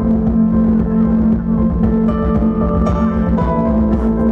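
Live band music: keyboard playing held notes that change every second or so over a steady low drone, with no vocals yet.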